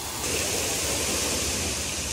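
Steady rushing hiss of fountain water jets splashing.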